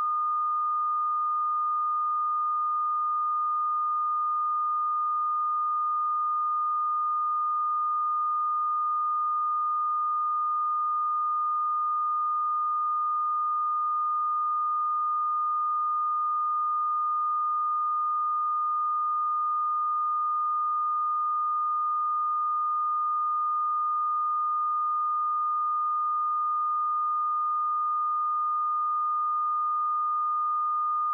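Steady line-up test tone played with SMPTE colour bars on a videotape leader: one pure, unwavering pitch, the reference tone for setting audio levels.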